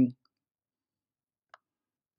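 A single short click of a computer pointing device about one and a half seconds in, selecting a clip, with near silence around it. A word of speech trails off at the very start.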